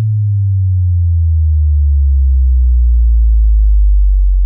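A loud, deep synthesized bass note held on at the end of an electronic dance track, sliding slowly down in pitch.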